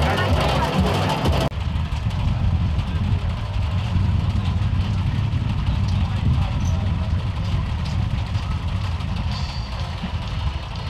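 Vintage tractor pulling a sugar beet harvester, the engine and harvester machinery running loud and full until a sudden cut about a second and a half in, then a steady low engine rumble with voices in the background.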